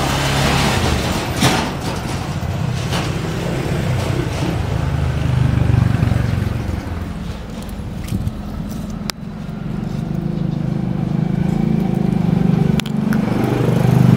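A motor engine running steadily nearby, its hum swelling and easing off, with a few sharp clicks.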